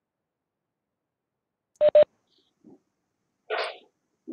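Two short electronic beeps in quick succession about two seconds in, followed near the end by a soft breath-like rustle.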